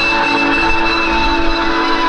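Loud amplified electric guitar holding a droning wall of several steady, sustained tones, with no drum beat.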